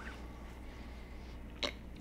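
Quiet room tone with a steady low hum. About one and a half seconds in comes a single short, sharp catch of breath from the mouth.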